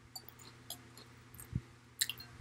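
Metal spoon faintly clicking and scraping against a glass bowl as it gathers crumbs, a few light clicks spaced about half a second apart, with a soft low thump about one and a half seconds in.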